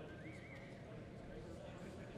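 A horse whinnying: one short, faint, wavering high call about a quarter second in.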